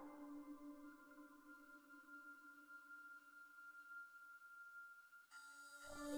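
Near silence with a faint, steady held tone of ambient meditation music. Just before the end the music swells back in with several sustained notes.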